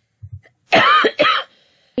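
A woman coughing twice in quick succession, the second cough shorter than the first.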